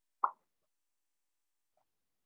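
A single short, soft pop about a quarter second in, followed by near silence.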